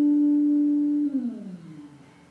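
A bass guitar sustaining a single high note, then sliding it down nearly an octave about a second in as the note fades out.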